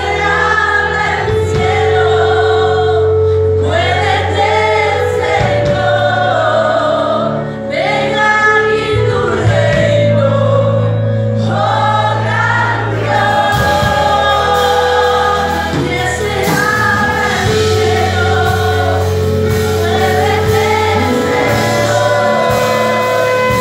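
Live Christian worship music: several singers, women and men, singing a slow song together over long, held chords from the band.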